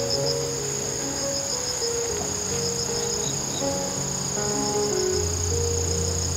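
Insects singing steadily in a sunny garden: one continuous high trill and a second high trill that pulses several times a second. Underneath, soft background music of slow, sustained notes.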